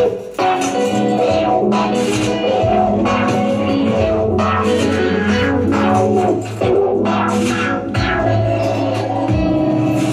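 Live experimental music: electric guitar layered with electronic sounds triggered from a pad controller, dense and continuous, with sharp noisy hits recurring throughout.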